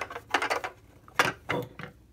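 All-plastic 1/18 scale Chevrolet SS NASCAR model car being handled and turned over, its light plastic body giving several sharp clicks and knocks, about six in two seconds.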